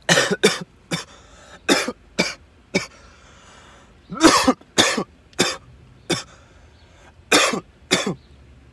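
A man coughing in a fit after a hit from a cannabis vape cartridge: about a dozen harsh coughs at uneven intervals, the loudest about four seconds in.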